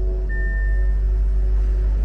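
2023 Bentley Continental GT engine starting, with a sudden deep rumble that settles into a steady idle. Background music plays throughout.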